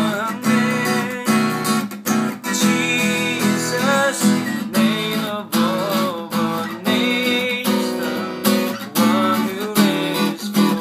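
Steel-string acoustic guitar strummed in a steady rhythm, chords ringing between the strokes as the chord changes move along the lower frets.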